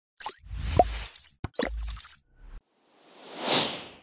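Animated intro sound effects: a few short pops and clicks, then a whoosh that builds and peaks about three and a half seconds in.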